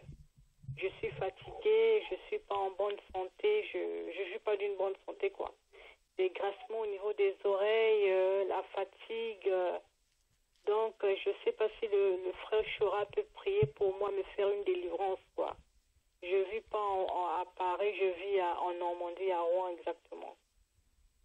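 A woman speaking over a telephone line, the voice thin and cut off above the midrange, in several phrases with short pauses between them.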